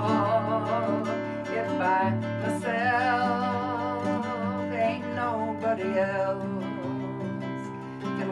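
A woman singing long held notes with vibrato over a strummed nylon-string classical guitar.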